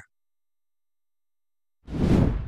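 Silence, then near the end a whoosh sound effect swells in for a segment transition.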